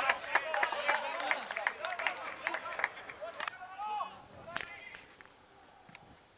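Pitch-side sound at an amateur football match: faint, distant shouting voices of players and onlookers with a few sharp knocks, one louder near the end, before it fades to near silence.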